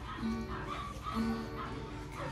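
A small choir of adults and children singing together with an acoustic guitar accompanying them.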